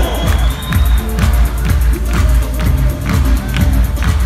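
Live rock band playing an up-tempo, synth-driven instrumental passage: a pulsing bass line under electric guitar and drums, with a sharp drum hit about twice a second and no vocals.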